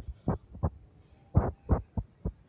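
Handling noise on a handheld phone's microphone: several soft, irregular low thumps, about two a second in places, with quiet gaps between them.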